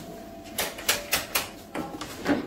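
A quick, uneven run of about five sharp clicks and knocks, a quarter second or so apart, starting about half a second in.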